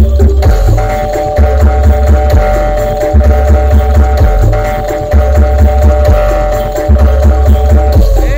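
Loud traditional East Javanese Bantengan accompaniment music. Heavy, deep drum beats play under a high note held steady from about half a second in.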